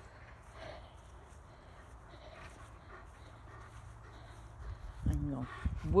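Quiet outdoor background with a steady low rumble and a few faint soft sounds; a woman's voice starts near the end.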